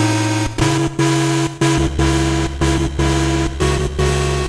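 Mayer EMI MD900 virtual-analog synthesizer played from a keyboard: a noisy, buzzy patch sounding rhythmic repeated notes broken by short gaps, with a deep bass note joining just under two seconds in.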